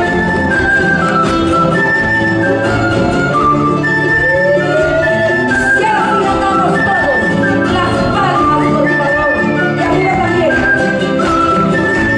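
Bolivian folk band playing live: acoustic guitars and other string instruments with percussion under a sustained high melody line, in a mostly instrumental passage of the song.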